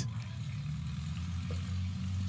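Cessna 170 light aircraft's piston engine idling after a short landing, a steady low drone.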